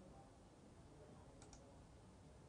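Near silence: faint room tone, with a faint double click about a second and a half in.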